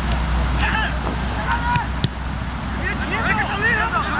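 Voices of players calling out across the field in short shouts, more of them in the second half, over a steady low rumble. A single sharp knock comes about two seconds in.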